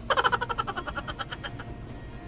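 A burst of rapid laughter from a woman, starting loud and fading away over about a second and a half.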